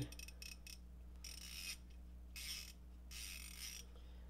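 Koken Zeal 3/8" long flex-head ratchet's 72-tooth pawl mechanism ratcheting as the head is turned backwards: a few single clicks, then three runs of very fine, rapid clicking, each about half a second long. The back drag is very light.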